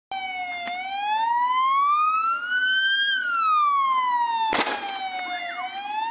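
An emergency vehicle siren wailing, its pitch slowly rising and falling. About four and a half seconds in, a single sharp bang: a tyre bursting on the burning minibus.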